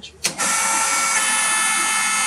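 A click, then the 240 V single-phase electric motor of a hydraulic power pack starts and runs with a steady whine. About a second in, the tone shifts as the time-delayed solenoid valve engages and puts the pump under load.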